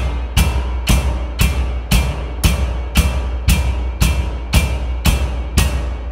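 Percussion ensemble playing a loud, evenly spaced pulse of drum strikes, about two a second, each ringing out brightly, over a sustained deep low drone. The last strike comes near the end and the sound begins to die away.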